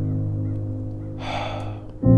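A sustained music chord slowly fading, with a short sharp breath, like a gasp, about a second in.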